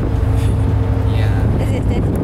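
Steady low drone of a car ferry's engines heard on the open deck, with a constant hum and wind on the microphone; brief voices come through about half a second and a second in.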